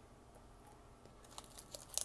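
Foil Pokémon booster-pack wrappers crinkling as packs are pulled from a booster box: a few short, sharp rustles in the second half, after a quiet start.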